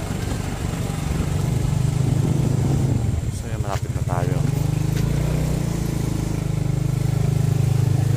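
Small motorcycle engine running steadily while riding, with a dip in loudness and a shift in its note about four seconds in.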